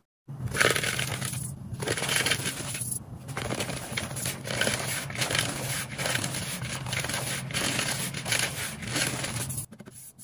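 Hands crushing soft blocks of gym chalk into powder in a wooden bowl: a dense, crumbly crackle with many small cracks. It starts just after the first moment, with two brief lulls early on.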